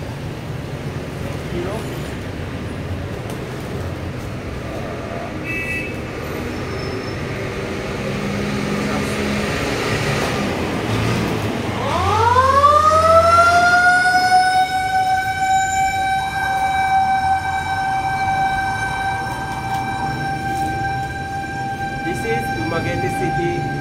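A siren winds up about twelve seconds in, its pitch rising quickly and then levelling off into one long steady wail.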